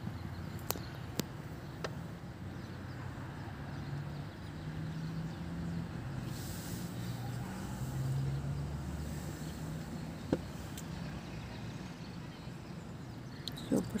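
A motor vehicle's engine humming low, loudest about eight seconds in, over street ambience, with a few light clicks and a sharper click about ten seconds in.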